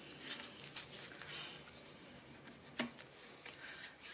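Faint rustle of paper being handled and pressed on a tabletop, with a single sharp tap a little under three seconds in.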